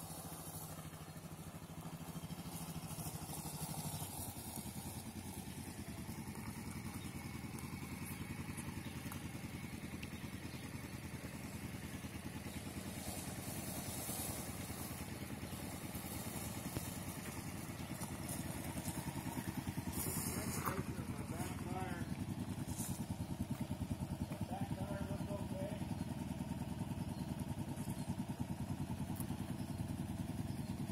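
Motorcycle engines running and getting louder as the bikes ride up close and idle.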